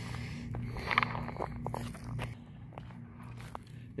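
Footsteps on gritty asphalt and gravel: a handful of short crunching steps, mostly in the first couple of seconds, over a faint steady low hum.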